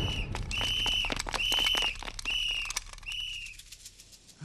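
A high, steady whistle-like tone sounding five times, each about half a second long, over a low hum and scattered clicks in a film soundtrack. It fades out near the end.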